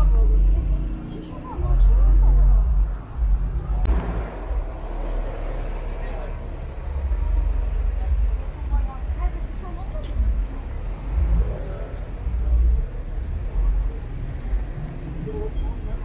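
Busy city street ambience: passersby talking and road traffic running under a steady low rumble, with a brief rush of noise about four seconds in.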